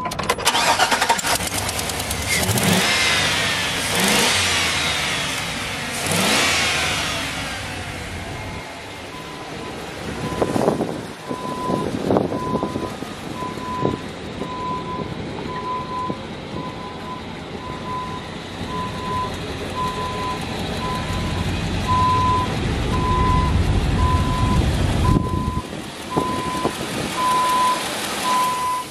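GMC Sierra pickup's V8 engine running, revved several times in rising-and-falling sweeps over the first several seconds, then running more steadily. From about ten seconds in, a backup alarm beeps repeatedly in the background.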